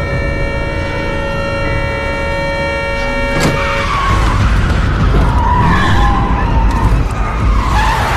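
Sustained tense music chords end in a sharp hit about three and a half seconds in. Then a car's tyres squeal in a skid over a heavy engine rumble, the lead-up to a crash.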